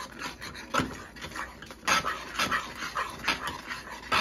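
Metal spoon stirring a thick cream sauce in a small saucepan: irregular wet scrapes and slops against the pan, a few each second.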